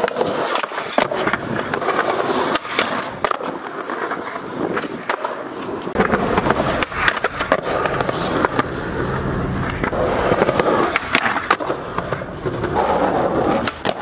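Skateboard wheels rolling over sidewalk concrete, broken by repeated sharp clacks of the board striking the pavement.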